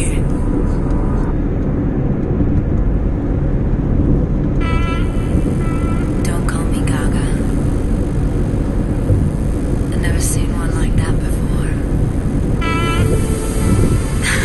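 Steady road and engine rumble inside a car moving at highway speed, with music and a voice from the car's stereo coming through in short stretches.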